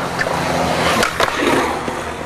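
Skateboard wheels rolling over concrete, with several sharp clacks of the board hitting the ground.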